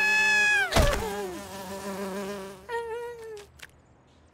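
Cartoon bee buzzing steadily, fading out just under three seconds in, with a sliding pitched sound and a sharp thump about a second in.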